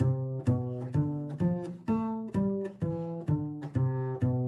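Double bass played pizzicato: a jazz walking bass line of evenly pulsed plucked notes, a little over two a second, spelling a ii–V–I chord progression.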